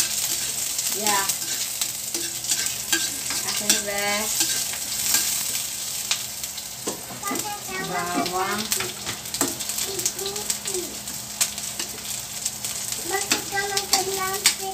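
Chopped onion and garlic sizzling in hot oil in an aluminium wok, with a steady hiss, while a spatula stirs and scrapes them around the pan, giving frequent sharp ticks against the metal.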